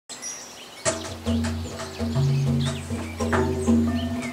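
Hand drumming on a large double-headed barrel drum: deep, ringing notes that begin about a second in and are struck again every half second or so. Magpies call in the background.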